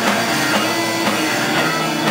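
A live punk blues band playing loudly: distorted electric guitar over a drum kit keeping a steady beat.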